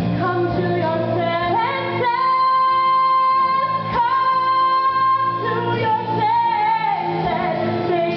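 A woman belting a musical-theatre song with a live band accompanying; about two seconds in she climbs to a long held high note lasting about three seconds, then carries on with further held notes.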